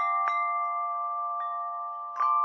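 Bell-like chime music: a few struck notes, near the start and again after about a second, ring on over a steady bed of sustained tones.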